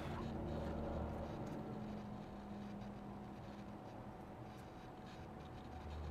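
Faint scratchy rubbing of a cotton wool bud on a small plastic model part, with small handling clicks, over a low hum that fades out after about two seconds.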